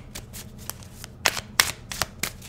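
A tarot deck shuffled by hand: a soft riffling of cards with a few sharp card slaps in the second half.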